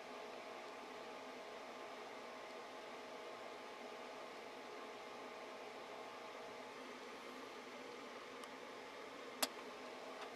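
Faint steady room hiss with a low hum. A single sharp click comes near the end.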